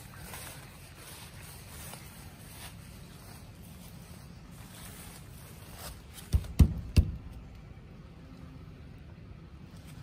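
A small wooden door being pulled open, giving three sharp knocks in quick succession about six seconds in, against a low, steady outdoor background.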